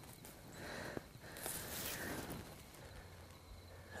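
Faint rustling of dry grass and clothing as a kneeling hunter picks up an arrow, with a light click about a second in.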